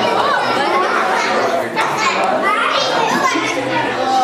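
A crowd of young children's voices shouting and chattering at once, many high-pitched voices overlapping.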